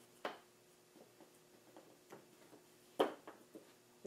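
Small click as the temporary battery's plug is pulled apart to cut power to the speed controller, then faint handling ticks and a sharper click about three seconds in.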